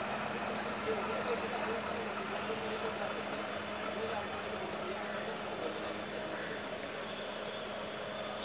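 A small hatchback car driving slowly away at low engine speed: a faint, steady engine note that fades slightly as the car moves off.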